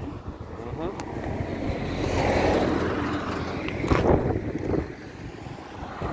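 A road vehicle passing by: its noise swells and fades over a couple of seconds, over a steady low rumble of wind on the microphone. There is a short sharp knock about four seconds in.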